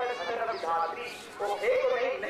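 A high-pitched, wavering voice speaking without pause.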